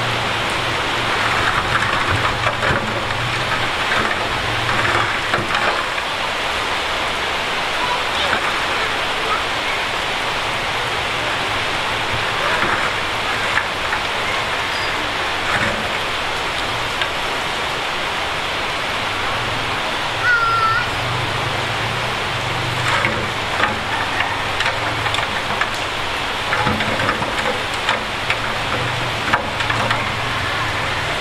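Diesel engines of a dump truck and a small bulldozer running at low revs, their hum swelling at times, under a steady hiss, with scattered small knocks.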